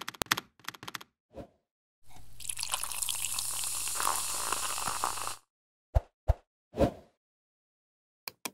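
Animated-intro sound effects: a run of quick typing-like clicks, a short pop, about three seconds of steady noise, then three short plops.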